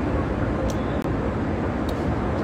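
Steady cabin noise inside a private jet: an even low rumble and hiss that does not change, with a few faint light clicks.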